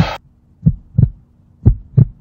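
Heartbeat sound effect: low lub-dub thumps in pairs, about one pair a second, three pairs in all, over a faint steady hum.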